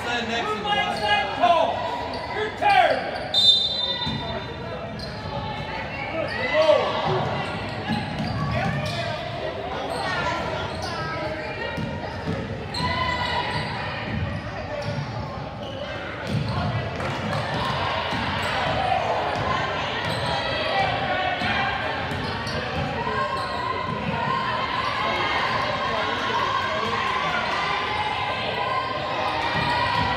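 Basketball being dribbled and bounced on a gym's hardwood court, with indistinct voices of players and spectators echoing in the large hall.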